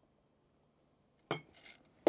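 A glass mixing glass clinks as it is set down on a wooden counter about a second and a half in, followed by a fainter second clink.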